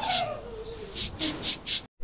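A cat's long, drawn-out meow falling steadily in pitch.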